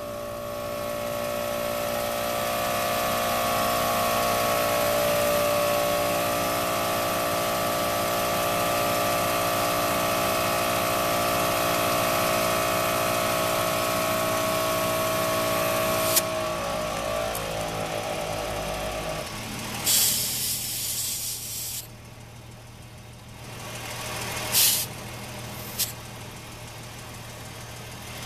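ARB CKMTA12 twin-motor 12-volt air compressor running steadily while inflating a truck tire. About sixteen seconds in it is shut off and its motors wind down over a few seconds. Then come short hisses of air at the tire valve, over a low steady hum.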